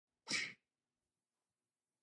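A single short, breathy sound from a person's voice, about a third of a second long, a quarter second in.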